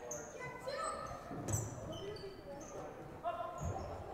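Basketball game on a gym's hardwood court: the ball bounces with low thumps about a second and a half in and again near the end, amid short high sneaker squeaks and voices echoing in the large hall.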